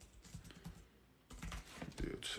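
Faint typing taps on a keyboard: a few scattered soft clicks, then a quicker run of taps in the second half.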